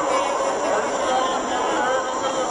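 Crowd of many people talking at once, overlapping voices blending into a steady babble.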